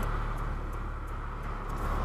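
A 2008 Honda Civic Si's K20 four-cylinder engine running steadily, heard from inside the cabin with the windows open, over outdoor traffic ambience.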